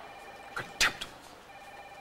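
A telephone ringing faintly in the background, breaking off briefly past the middle and starting again near the end, with one sharp click a little under a second in.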